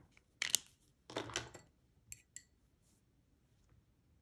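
Art supplies handled on a tabletop: a sharp knock about half a second in, a short rustle about a second in, then two light clicks a quarter-second apart about two seconds in.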